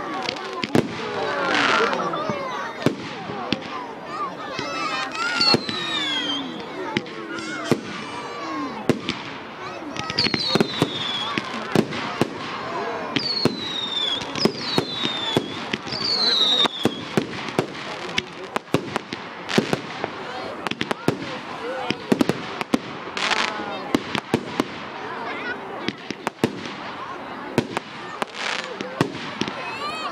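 A fireworks display going off: a constant run of sharp bangs and crackles, with several short falling whistles around the middle and a few brief hissing whooshes.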